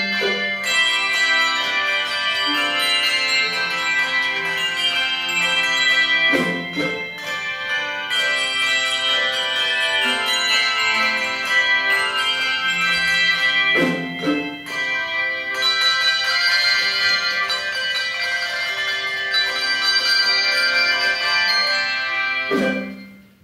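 Handbell choir playing: many ringing bell tones sounding together in a melody with sustained chords, with strongly struck accents at the start and about 6 and 14 seconds in.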